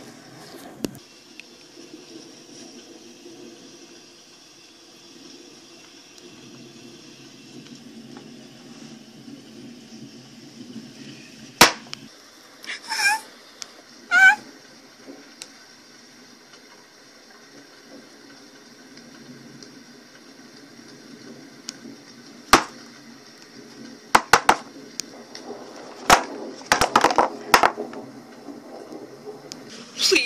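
Quiet room tone with a faint steady hum, broken by sharp knocks and clicks of plastic toy ponies being handled and set down on a cardboard box, several of them bunched together near the end. Around the middle there are two short high-pitched sounds about a second apart.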